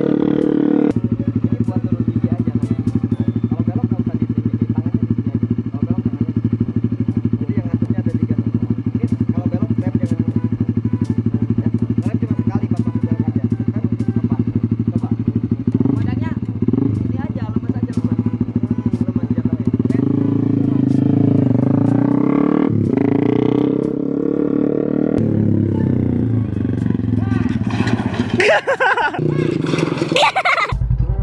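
Small race motorcycle's engine idling steadily, then revved up about twenty seconds in. A louder burst of noise near the end as the bike goes down on the tarmac.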